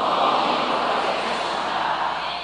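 A large congregation reciting a sentence back in unison, heard as a dense wash of many voices in which no single voice stands out.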